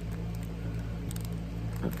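Fingernail picking at a barcode sticker on a plastic-bagged set of metal cutting dies, with a few faint scratches and clicks about a second in. A steady low hum runs underneath.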